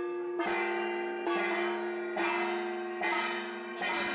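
A bell struck in a steady rhythm, about five rings a little under a second apart, each ringing on into the next.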